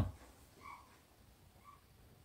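Two faint, short, pitched calls about a second apart, like an animal calling, with quiet room tone between them.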